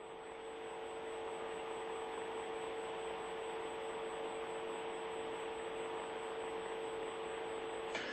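Steady hiss with a constant low hum tone underneath, the background noise of the audio feed from inside the Soyuz capsule.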